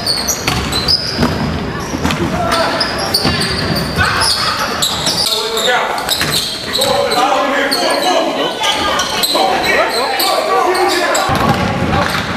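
Game sound of a basketball being dribbled on a gym floor, with indistinct voices of players and onlookers. The sound changes abruptly around five seconds in and again near the end, where the footage cuts between games.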